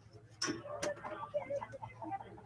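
Two sharp clicks about half a second apart, followed by faint distant voices calling out on the ballfield.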